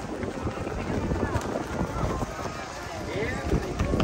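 Footsteps on a wooden footbridge, with indistinct voices of people passing close by.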